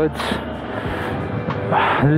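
KTM 390 Adventure's single-cylinder engine running at low speed in town traffic, with road and wind noise on the helmet microphone.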